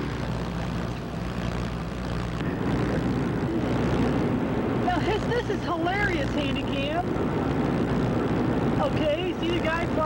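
Steady vehicle engine and road noise heard from inside a moving car. From about halfway, a voice with a strongly rising and falling pitch is heard over it.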